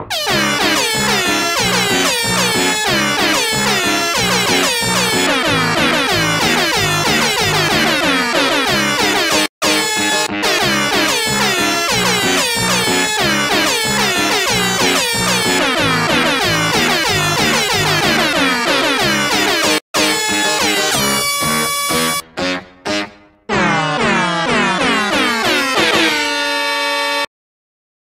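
A fast, busy song melody and accompaniment played entirely with sampled horn honks, a honk remix of a song. Near the end the honks thin out into a few separate blasts, then one long held honked chord that cuts off suddenly.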